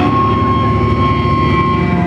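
Loud, sustained drone of amplified electric guitar and bass holding a note, a dense low rumble with a steady high whine over it and no drums.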